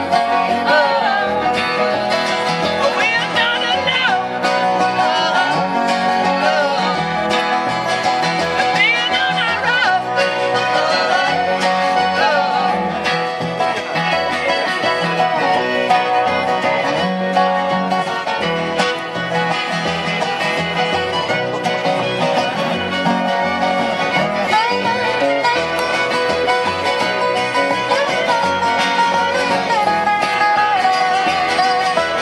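Live acoustic string band playing an instrumental passage: strummed acoustic guitars, fiddle and upright bass.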